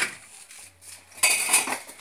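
Kitchenware clattering in two bursts: a short one at the start and a longer, louder one a little over a second in.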